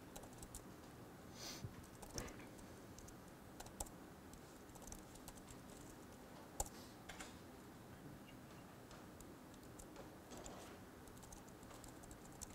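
Faint, sparse typing on a laptop keyboard: scattered key clicks over a low room hum, with one sharper click about six and a half seconds in.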